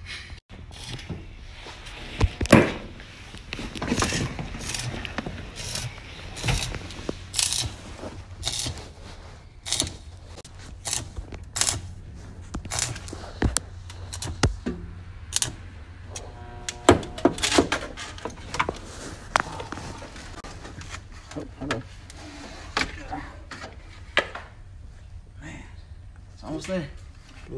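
Stick (arc) welder laying short tack welds to close small holes in a sheet-steel floor-pan patch: a string of brief, sharp crackles at irregular intervals, roughly one a second, over a steady low hum.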